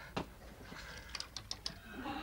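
Small plastic mineral-water bottles being handled: one light tick, then a quick run of about five faint high clicks of the plastic and caps about a second in.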